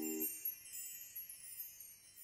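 The song's final held chord stops a quarter of a second in, leaving a high, sparkling chime tinkle that fades out as the music ends.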